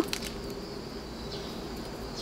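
Faint outdoor background with a thin, steady high-pitched hum, and a few light ticks from succulent stems being handled just after the start.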